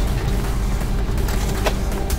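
Street ambience with a steady low vehicle-engine rumble and a faint music bed underneath, with one sharp click near the end.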